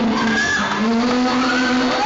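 A song performed live: a man singing into a microphone over acoustic guitar, with long held notes and a melody that slides in pitch.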